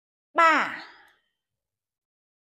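Only speech: a woman's voice calls out a single count word, 'ba' ('three'), falling in pitch and fading out within about a second.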